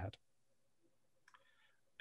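Near silence after a last word of speech, with one faint short click a little over a second in.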